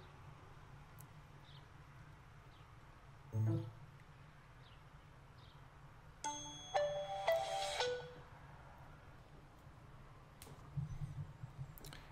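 AT&T startup jingle from the Samsung Galaxy Note i717's speaker as it boots: a short run of bright chime tones, under two seconds long, about six seconds in.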